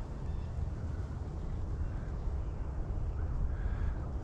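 Wind buffeting the microphone outdoors: a steady low rumble that rises and falls with the gusts.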